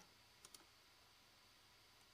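Near silence: room tone, with two faint computer mouse clicks close together about half a second in.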